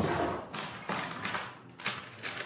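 Cardboard and paper packaging being handled as a box is unpacked: a sharp click at the start, then scattered rustling and light knocks as the flaps and inserts are moved and a paper sheet is pulled out.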